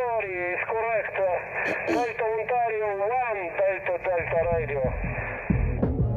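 A voice received over single-sideband shortwave radio on a Yaesu FT-817 transceiver's speaker, thin and narrow-sounding. Music comes in near the end.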